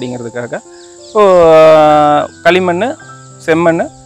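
A man talking, with one long drawn-out vowel near the middle that is the loudest part, over a thin, steady, high-pitched insect drone from crickets.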